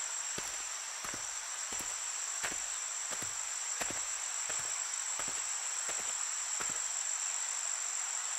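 Steady chirring of crickets as a background ambience, with soft, evenly spaced footstep taps about three every two seconds.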